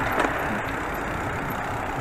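Steady rushing noise from a bicycle ride: wind on the handlebar-mounted microphone and tyres rolling over a paved path, with a faint click about a fifth of a second in.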